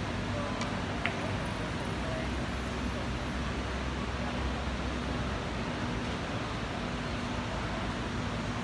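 Steady hum and hiss of a large hall with faint voices in the background; about half a second in, two sharp clicks less than half a second apart, carom billiard balls striking each other during a shot.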